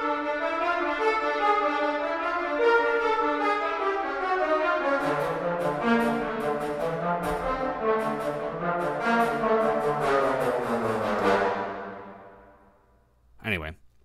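Sampled orchestral brass from Spitfire Symphonic Brass playing a melody through Altiverb's Konzerthaus Berlin hall reverb. Low brass join about five seconds in. The phrase stops near the end, and a long hall reverb tail fades out.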